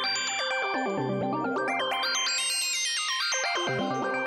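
Korg opsix FM synthesizer playing its factory preset "NOS": sustained chords played on the keyboard, with bright high tones that step up and back down in the middle.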